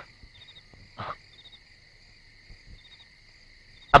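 Crickets chirping steadily in a night-time ambience, a continuous high trill with small extra chirps every second or so. A brief faint sound comes about a second in.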